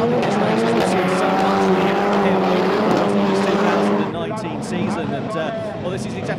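Pantera RX6 rallycross cars racing past in a close pack, engines at high revs. The engine sound drops away about four seconds in.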